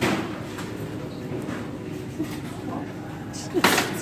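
A loaded shopping cart being jostled: a knock at the start, then a short, loud rattle of the cart and its packaged groceries about three and a half seconds in.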